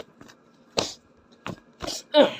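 Three short scuffling thumps, about a second in, at a second and a half and near the end, from hand-held plush toys being knocked together in a staged fight.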